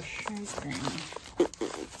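A woman talking quietly under her breath, then coughing once, sharply, near the end.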